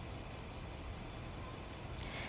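Steady low rumble with a faint hiss: outdoor city background noise, engine-like, picked up by an open microphone.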